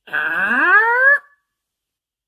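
A voice making one drawn-out 'uhh' that rises steeply in pitch, lasting about a second.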